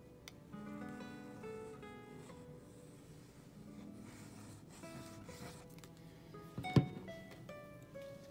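Background acoustic guitar music of plucked notes, with one sharp knock about seven seconds in.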